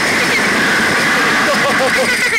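Two riders on a Slingshot reverse-bungee ride screaming and laughing over loud wind rushing across the on-board camera's microphone, with short yelps near the end.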